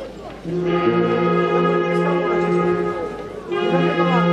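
Brass band playing slow, long-held chords. The chords come in about half a second in, break off briefly near the end, and start again. Crowd voices are heard just before the band comes in.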